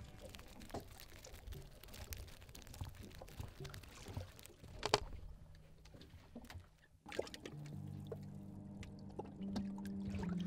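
Water splashing and trickling, with many small drips and one sharper splash about five seconds in. After a sudden break about seven seconds in, a low steady hum with a few shifting tones takes over.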